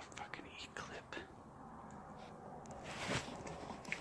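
Faint close-up handling noises: small clicks and rustles with a breathy rush about three seconds in, as a person holding the phone lifts a plastic bottle to drink.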